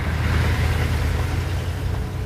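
Military Humvee driving through shallow surf: its diesel engine running with a steady low rumble under the splash of water thrown up by the tyres.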